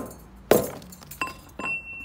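A metal pipe striking dried cow-dung cakes on a concrete floor to break them into pieces for stove fuel: one heavy knock about half a second in, then lighter clinks, the last leaving a high metallic ring as the pipe is set down on the concrete.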